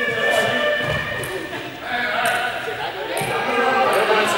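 Several young people talking and calling out at once, overlapping voices echoing in a large sports hall.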